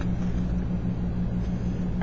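A steady low hum with no other sound: constant background noise of the recording.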